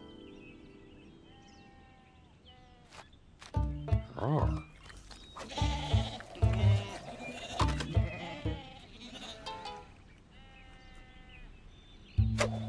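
Cartoon sheep bleating: a run of short, wavering bleats one after another from about three and a half seconds in, over light background music. The first seconds hold only faint music.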